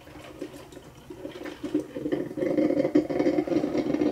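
Cuisinart drip coffee maker gurgling as its heater pushes hot water up through the tubes, faint at first and growing steadily louder over the second half. The machine is brewing again after its scale-clogged hoses were cleared.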